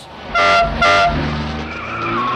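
Two short car-horn blasts, each a steady honk, then tyres squealing with a car's engine running under it, carrying on to the end.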